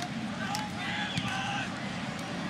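Steady stadium crowd noise, a general hubbub from the stands, with a faint voice-like sound rising above it for about a second in the middle.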